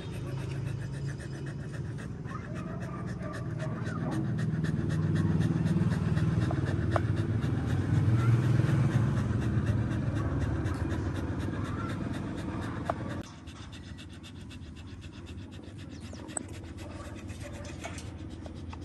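A corgi panting quickly and steadily close to the microphone, as a dog does to cool off on a hot day. A low steady hum underneath cuts off suddenly about thirteen seconds in.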